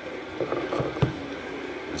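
Handling noises at a desk: soft rustles and taps, then one sharp knock about halfway through, as the cologne bottle is set down. A steady low air-conditioning hum runs underneath.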